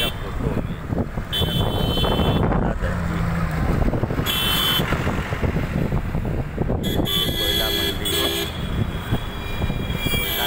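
Busy road traffic with trucks and other vehicles running past, and vehicle horns honking several times: short blasts a little over a second in and about four and a half seconds in, then a longer stretch of honking from about seven seconds.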